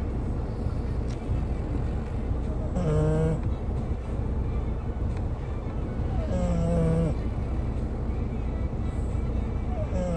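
Sleeping French bulldogs snoring, a short pitched snore about every three and a half seconds, over the steady low rumble of a moving car.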